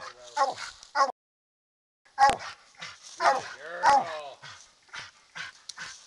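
Coonhound barking repeatedly at the base of a tree, treeing: a run of short, falling chop barks with one longer drawn-out bawl near the middle, and a brief gap of silence about a second in.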